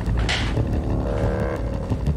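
Tense drama background music: a steady, low rumbling bass drone, with a short swish near the start and a brief synth tone about halfway through.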